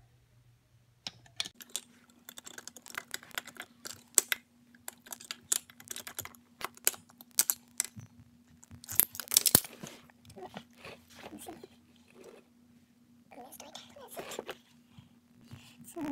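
Irregular metal clicks, knocks and scrapes of hand tools and locking pliers working the top fitting of a new air suspension spring as it is tightened, busiest a little past the middle, with a faint steady hum underneath.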